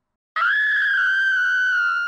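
One long, high-pitched scream, starting about a third of a second in and held at one pitch before it drops away at the end.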